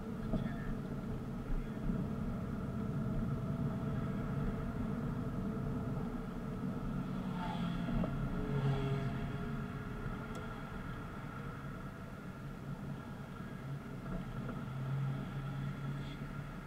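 Car driving slowly in traffic, heard from inside the cabin: a steady low engine and road hum. About halfway through, a motorcycle passing alongside briefly adds a louder engine sound that rises and falls in pitch.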